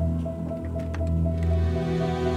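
Background score music: a low sustained drone under held chords and a softly repeating pulsed note.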